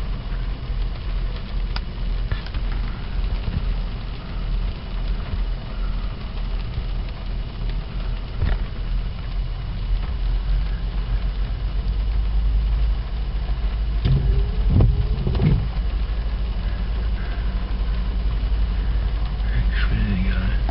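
Inside a car's cabin: a steady low engine and road rumble, with a couple of brief wavering sounds a little past the middle.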